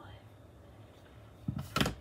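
Quiet room tone, then a short cluster of sharp clicks and knocks near the end as small craft items are handled and set down on the tabletop.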